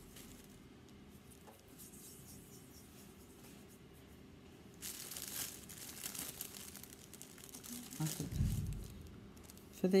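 A thin clear plastic bag crinkling as it is handled, starting about halfway through, with a dull low thump near the end.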